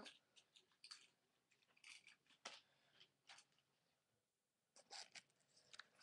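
Faint handling sounds: about half a dozen short clicks and rustles as a pin is taken out and a pipe cleaner worked by hand.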